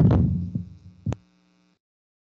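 Low electrical hum on a computer microphone, with a dull knock right at the start and a single sharp click about a second in; then the sound cuts off.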